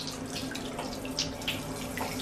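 Bath mixer tap running, a stream of water pouring into the bottom of a bathtub to fill it, with small splashes.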